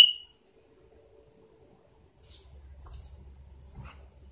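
A single short, high-pitched electronic beep or chirp right at the start, fading within a fraction of a second. About two seconds later comes a faint, low rustling noise with a few soft hisses.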